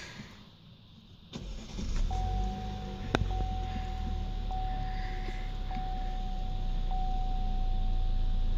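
A 2017 Chevrolet Camaro's engine started from inside the cabin: a click, then the engine catches about a second and a half in and settles into a steady idle. A steady electronic tone sounds over the idle from about two seconds in, pulsing about once a second, with a single sharp click shortly after it starts.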